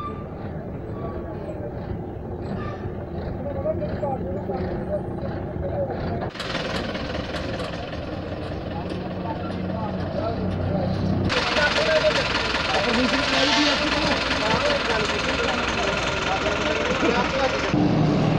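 Truck engines running, with people talking in the background. The sound changes abruptly twice, about six and eleven seconds in, and is louder and brighter after the second change.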